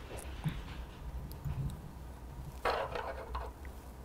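Faint handling sounds of tying thread being wrapped onto a fly hook held in a vise: soft rustles and small ticks over a low steady hum, with one brief louder rustle a little under three seconds in.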